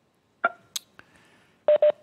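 Short electronic tones over a video-call audio line: a brief tone about half a second in, followed by a click, then two quick beeps of the same pitch near the end.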